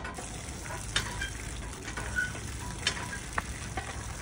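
Hand-lever street water pump being worked: a steady splashing hiss of water with a few sharp knocks from the pump mechanism, about one, three and three and a half seconds in.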